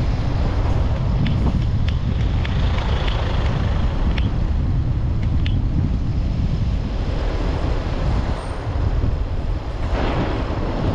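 Car driving along a street: steady low road and engine rumble with wind buffeting the microphone, and a few faint clicks.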